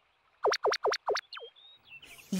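Cartoon sound effect of quick whistle-like downward sweeps, four in rapid succession about half a second in, then a fifth, followed by a couple of short high chirps near the end.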